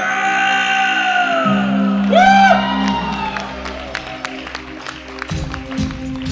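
A male singer holds a long final note over a sustained bass-guitar note at the end of a live Hindi song, the note slowly falling. About two seconds in, a whoop rises from the audience, followed by scattered clapping and cheering. Near the end the band starts playing again.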